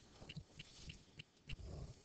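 Near silence: faint room tone with soft ticks about three times a second and a few dull low bumps.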